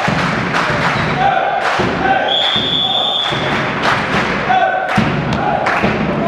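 Volleyballs thumping off hands and the sports-hall floor in several sharp hits, with the referee's whistle blowing once for about a second a little after two seconds in, the signal for the serve. Players and spectators shout throughout.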